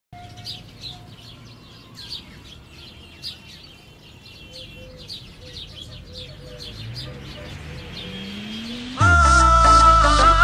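Birds chirping in quick repeated calls over a soft intro with a slowly rising tone, then about nine seconds in the Haryanvi song's music comes in suddenly and loudly with a deep falling bass sweep.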